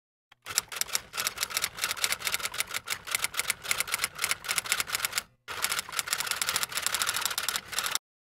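Typewriter typing sound effect: a fast run of key clicks, broken by one short pause about five and a half seconds in.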